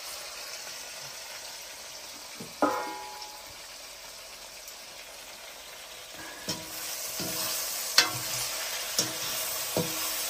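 Potatoes and soybean frying in a two-handled wok over a wood fire, a steady sizzle. The ladle knocks against the wok with a short ring about two and a half seconds in; from about six and a half seconds the sizzle grows louder as the ladle stirs, knocking the pan several times.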